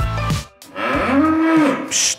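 A fattening bull moos once: a single call of about a second that rises and then falls in pitch.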